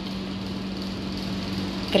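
A steady, low machine hum, unchanging throughout.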